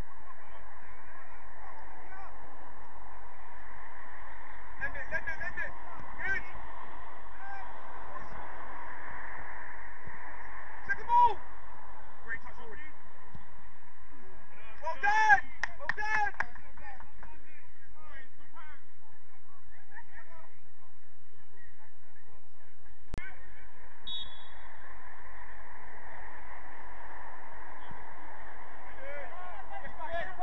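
Distant shouts and calls of players across an open football pitch over steady background noise. The calls come now and then, the loudest about 11 seconds in and again around 15 to 16 seconds.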